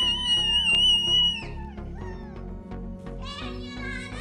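A girl's long, high-pitched excited squeal, held steady and ending about a second and a half in, over background music with a steady beat that carries on alone afterwards.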